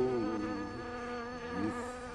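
A fly buzzing steadily, its pitch wavering slightly, with a short rising swoop near the end.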